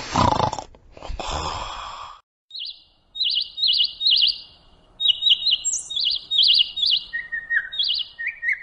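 Small birds chirping in quick, repeated high warbling notes, the morning birdsong of waking up, beginning about two and a half seconds in. It is preceded by a loud rushing noise that breaks off twice over the first two seconds.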